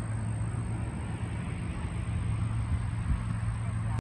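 Steady engine drone with a strong low hum, with a single low thump about three seconds in.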